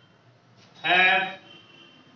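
A man's voice holding one drawn-out vowel sound for about half a second, about a second in.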